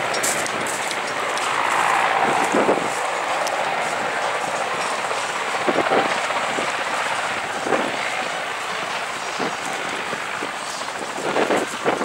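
Steady din of farm machinery working in a field, heard from a distance, with a few short knocks or clatters now and then.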